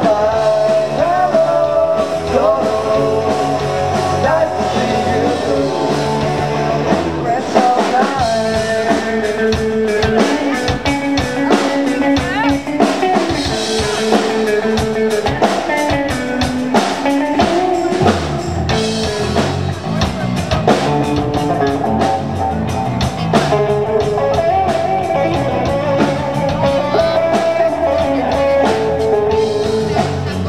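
Live rock band playing: electric guitar and drum kit over a steady beat.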